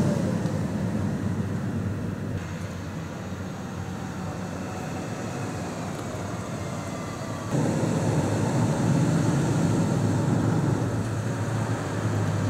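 RVs driving slowly past one after another: a motorhome towing a car, then pickup trucks towing fifth-wheel trailers, with steady engine drone and tyre noise. The sound eases off after about two seconds and steps up again with a louder engine drone about seven and a half seconds in.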